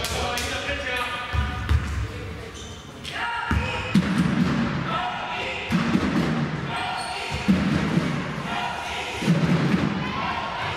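Basketball bouncing on the indoor court with sharp knocks every second or two, under shouts and calls from players and people around the court.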